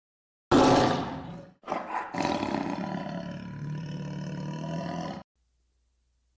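Tiger roar sound effect on a logo sting: a loud burst about half a second in that fades, a brief break, then a longer roar that stops abruptly about five seconds in.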